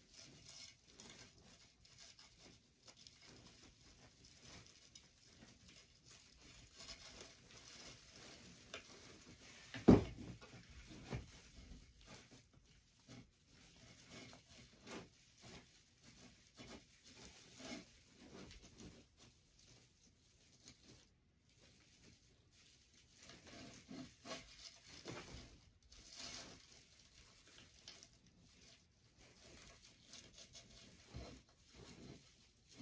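Faint rustling and light tapping from a yellow-and-black mesh swag and a small sign being handled on a craft table, with one sharp knock about ten seconds in.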